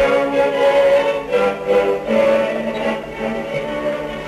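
Orchestral music led by strings, playing from a record on a gramophone.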